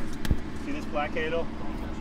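Voices talking in the background over a steady low rumble, with a single short knock just after the start.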